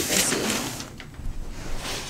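Gift-wrapping paper rustling and crinkling as a wrapped box is handled and its paper folded, loudest in the first second, with a short tap about halfway.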